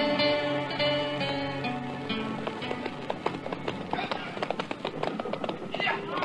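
Orchestral theme music with held notes, fading out about two to three seconds in. It gives way to radio sound effects of many hooves clattering, a cattle herd and horses on the move.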